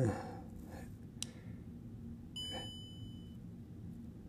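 A sharp click, then a single steady electronic beep about a second long from the DJI Osmo Mobile 3 smartphone gimbal as its power button is worked.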